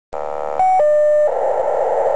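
Paging transmission received on a RadioShack Pro-84 scanner and heard through its speaker. A short buzz is followed by two steady tones, the first higher and the second lower, and then a harsh rasping burst of pager data.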